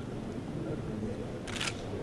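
A camera shutter firing a short, quick burst of clicks about three-quarters of the way through, over low, steady background noise in the hall.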